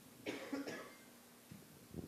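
A short cough in two quick bursts, about a quarter second and two-thirds of a second in.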